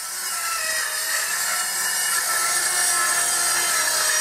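Skil 77 worm-drive circular saw cutting through a wooden board, getting louder over the first second as the blade goes into the cut and then running steadily.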